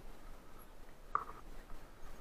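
Mountain bike rolling down a dirt and leaf-litter trail: a steady scratchy noise of tyres on the ground and the bike rattling. A short pitched sound comes about halfway through.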